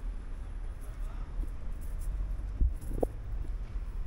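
Wind buffeting the microphone as a low, fluctuating rumble, with a single short knock a little over halfway through.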